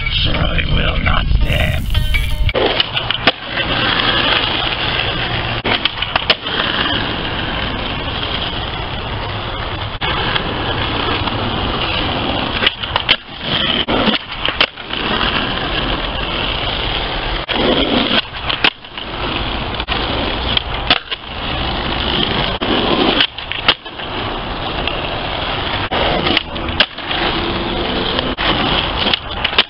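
An electric guitar is played for the first couple of seconds. Then a skateboard's wheels roll on asphalt, a loud, steady grinding hiss. It breaks off briefly every few seconds and comes back with sharp clacks as the board pops and lands on flatground tricks.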